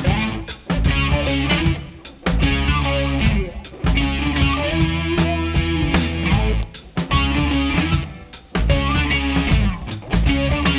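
Rock band playing an instrumental passage: electric guitar over bass and drum kit, with the band briefly dropping out several times.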